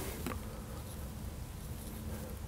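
Quiet steady low electrical hum of room tone, with one thin held tone in it.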